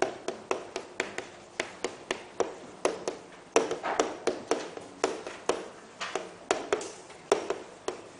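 Chalk tapping and scratching on a chalkboard as characters are written stroke by stroke: an irregular run of sharp taps, a few each second, with short scrapes between them.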